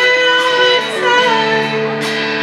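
Live rock band with a female lead singer holding long sung notes over electric and acoustic guitars.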